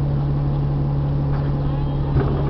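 2012 Nova Bus LFS Artic's Cummins ISL9 diesel idling at a stop, heard from inside the bus as a steady low hum.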